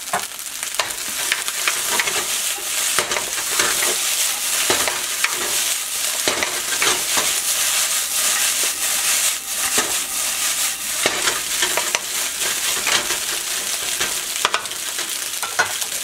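Fried rice sizzling in a wok while a wooden spatula stirs and scrapes it and the wok is tossed: a steady frying hiss with many short scrapes and knocks.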